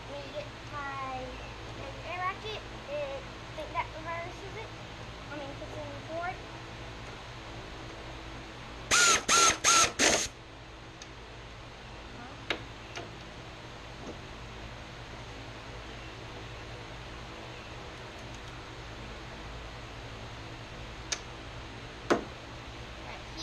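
Faint talking at first. About nine seconds in come four loud, quick pitched bursts, then a few separate sharp clicks of a hand wrench on the bolts of a riding mower's discharge-chute guard.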